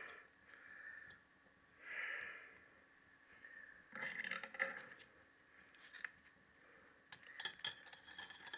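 Faint handling sounds of small steel engine parts: light scrapes and clinks as a valve spring is picked up and slid over a valve stem in the cylinder head, busiest about halfway through, with a few sharp clicks near the end.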